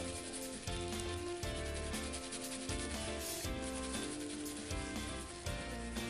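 Background music with a steady beat, with gloved fingers rubbing a slippery liquid into the skin and hair of the scalp.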